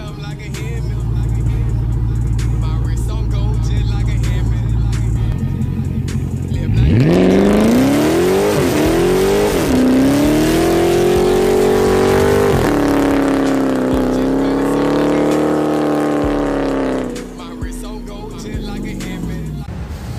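Car engine rumbling at idle, then revved hard about seven seconds in, its pitch bouncing up and down before being held high for several seconds under a loud rushing hiss, and dropping off about three seconds before the end.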